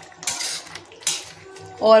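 Metal ladle scraping and stirring through paneer curry in an iron kadhai, two short scrapes about a second apart.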